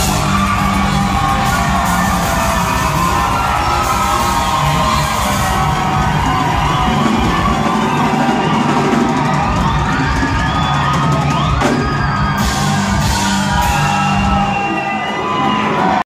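Live rock band playing loudly: electric guitars, bass guitar and drums, with the crowd whooping and yelling over the music.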